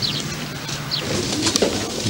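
Birds calling: a couple of short high chirps and a soft, low cooing.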